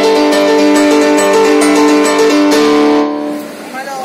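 Amplified digital piano playing the closing bars of a piano piece: a repeated melodic figure over held bass notes, ending on a final chord about three seconds in that dies away.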